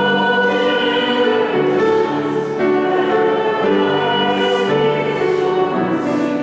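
Choir singing a slow hymn in held chords that change about once a second.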